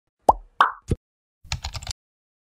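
Animated-intro sound effects: three quick cartoon pops a third of a second apart, then about half a second of rapid clicks like keyboard typing.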